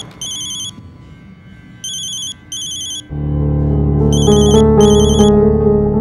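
Mobile phone ringing: a high electronic trilling ring in short bursts of about half a second, mostly in pairs. Background music with a heavy bass comes in about three seconds in, under the ringing.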